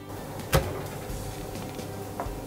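A single sharp snap about half a second in as a kitchen knife is pressed through a red tilefish's rib bone, over a faint steady background tone.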